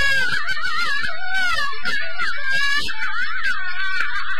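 Traditional Chinese opera music: a high, wavering, ornamented melody line with repeated short percussion strikes.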